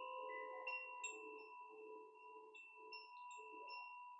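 Hand-held wooden-tube wind chime swung gently on its cord, its inner rods struck again and again. The soft bell-like tones overlap and keep ringing, with a fresh strike about every half second.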